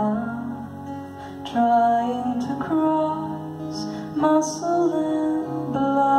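Live solo song: a woman singing long held notes while strumming an acoustic guitar.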